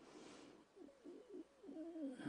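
A woman crying faintly into a microphone: a quick breath in, then a few short, wavering, choked sobs.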